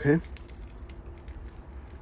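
Keys jingling: a Toyota remote head key on its metal key ring clinking lightly as it is handled.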